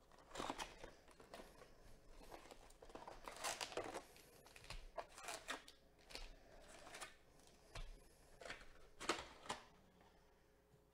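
A cardboard trading-card box being opened and its foil-wrapped packs handled and set down: faint scattered rustles, crinkles and light taps.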